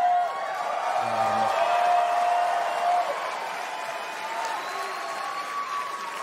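Large theatre audience applauding and cheering, with a few held shouts in the crowd, after a punchline.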